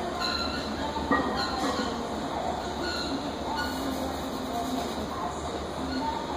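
Gym background noise: a steady low rumble with faint voices mixed in, and one short clank about a second in.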